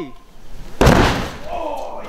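A 100 kg Thor's hammer, dropped from a 45 m tower, punching through an inflatable zorb ball into the sand: one heavy thud about a second in, followed by a short rushing trail.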